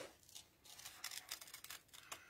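Small 4.5-inch X-Cut craft scissors snipping through card, a run of faint, quick snips as a curved outline is cut.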